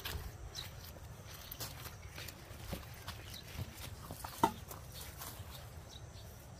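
Soft rustles and scattered light clicks of people moving in among perilla plants and starting to handle the leaves, with one sharper click about four and a half seconds in.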